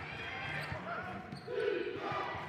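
Basketball game sound from the court: a ball bouncing on the hardwood floor amid faint crowd and player voices, with a brief louder shout about one and a half seconds in.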